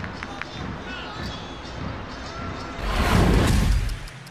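Football-pitch ambience with scattered shouts. About three seconds in, a loud whooshing broadcast transition effect swells up for about a second and cuts off abruptly.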